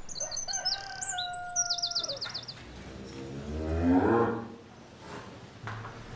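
Birds chirping for the first couple of seconds, then a cow mooing once: a long, low call that swells, rises in pitch and is loudest about four seconds in.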